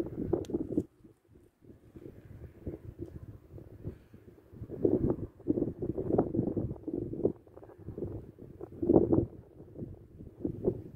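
Wind buffeting a phone microphone: irregular low rumbling gusts that swell and fade, strongest right at the start, again about five to six seconds in, and near nine seconds.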